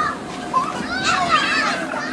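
Several young children shouting, squealing and chattering at once as they play in an inflatable bounce house, loudest about a second in, over a faint steady hum.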